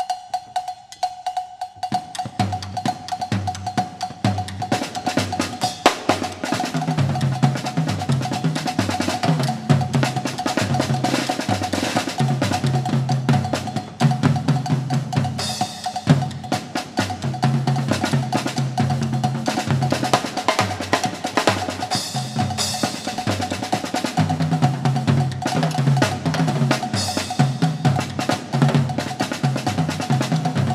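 Three drummers playing a fast drum ensemble on tom-toms and cymbals with sticks. The strokes are sparse at first and fill into continuous drumming about two seconds in. Cymbal crashes come about halfway, about three-quarters through and near the end.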